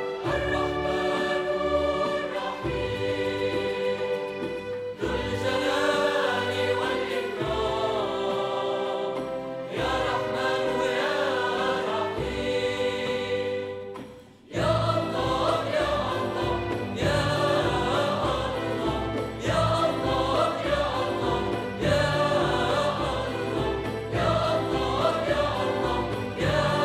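Mixed choir singing with a symphony orchestra in long, sustained chords. About halfway through, the music breaks off for a moment. It then resumes with frame drums beating a steady rhythm under the choir.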